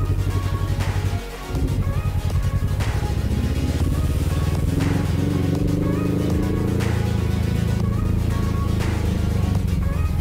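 Motorcycle engine pulling away, its revs rising over a few seconds, with a brief dip in level about a second in. Background music with a steady beat plays over it.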